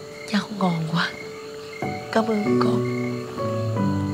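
A woman crying, with catching sobs that rise and fall in pitch in two bouts, over soft background music held in long steady chords.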